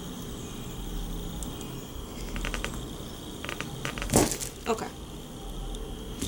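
Wax chunk loaf cracking under a crinkle-cut blade pressed down through it: a few faint clicks, then a louder sharp crack about four seconds in and a smaller one just after.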